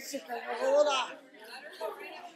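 Faint, indistinct voices murmuring in a large room, with no clear words.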